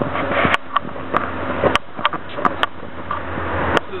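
Steady wash of road traffic noise, with several short sharp clicks scattered through it.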